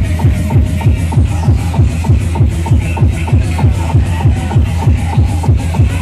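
Loud electronic dance music from the Tagada ride's sound system, with a steady, fast, pounding kick drum.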